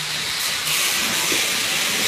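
A steady hiss of noise that grows louder about half a second in.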